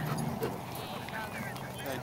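Faint background voices of people talking at a distance, with no clear bark or other distinct event.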